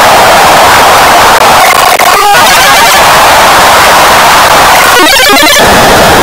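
Loud, harsh, heavily distorted noise from a cartoon soundtrack that audio effects have pushed into a steady wall of sound, with a brief break about two seconds in.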